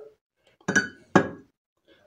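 Two clinks about half a second apart as a shaving brush knocks against a blue ceramic mug of warm water while it is handled and lifted out.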